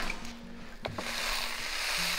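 Quiet background music with held low notes, and a single sharp click about a second in.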